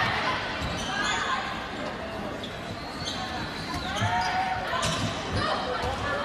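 Sneakers squeaking on a hardwood gym floor and the ball being hit during a volleyball rally, with a couple of sharp hits about four and five seconds in. Players' and spectators' voices echo in the gym.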